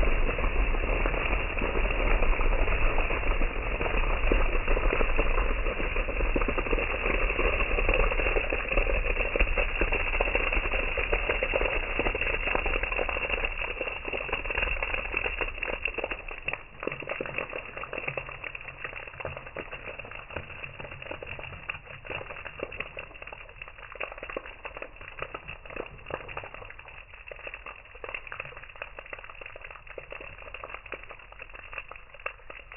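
A heavy gush of orange liquid pouring and splashing down a tiled wall and a pin-studded board, a dense, steady splashing that thins out after about thirteen seconds. It then gives way to scattered dripping and small patters as the last of the liquid trickles off the board onto the ledge and railings below.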